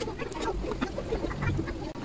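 Light clicks and rustles of a circuit board and its ribbon cable being handled and lifted out of a plastic enclosure.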